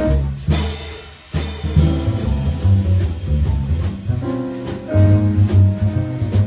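Upright bass plucked and a drum kit with cymbals playing jazz together. A cymbal crash comes about half a second in, the playing thins out briefly around a second in, then bass and drums pick up again.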